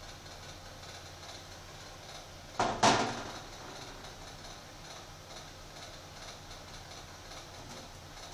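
Red plastic screw cap being twisted off a kerosene bottle: one short scraping click about two and a half seconds in, over a steady low hum.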